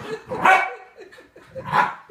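A dog barks twice, a little over a second apart.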